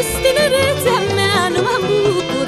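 Romanian folk music (muzică populară): a band plays a lively, heavily ornamented melody over a steady bass beat.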